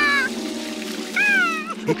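A cartoon monkey's high, wavering cries of dismay, heard twice, over held background music notes.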